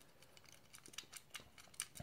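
A few faint, short metallic clicks, mostly in the second half, as a small bolt is unscrewed by hand from the bimetallic strip inside a plastic DC circuit breaker.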